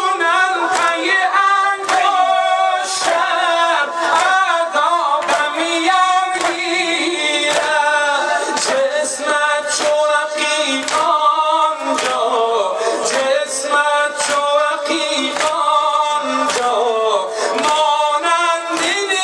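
A man singing a Muharram devotional lament into a microphone, his amplified voice wavering in long melodic lines. Under it a group of mourners beats their chests in unison, a sharp slap a little more often than once a second.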